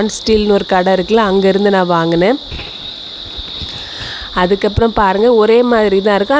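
A person speaking, with crickets chirring steadily at a high pitch underneath; the chirring stands alone in a pause in the middle.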